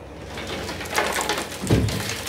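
Loose crud and sediment rattling and sliding around inside a Chevrolet El Camino's steel fuel tank as it is tipped back and forth, getting louder as it goes. The debris is left from about ten years of old gasoline sitting in the tank, and flushing and power washing have not got it out.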